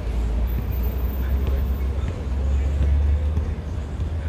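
Outdoor city ambience: a loud, steady low rumble with a few faint ticks above it.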